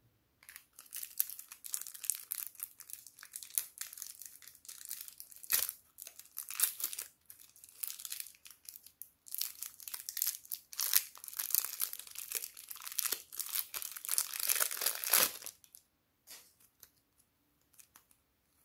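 Thin plastic packet of soft clay crinkling and tearing as fingers work it open, a dense run of crackles that stops about two and a half seconds before the end.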